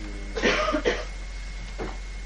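A person coughing, a short cluster of coughs about half a second in.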